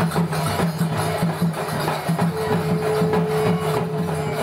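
Procession music played live: small hand cymbals struck in a fast, even rhythm over barrel drums, with a steady held note joining a little after two seconds in.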